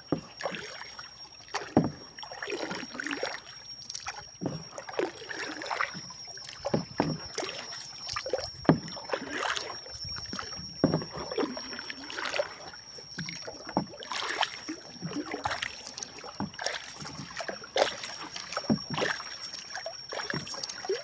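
Wooden canoe being paddled: irregular paddle strokes swishing and splashing in the water, with a few sharp knocks. A thin, steady high whine runs underneath.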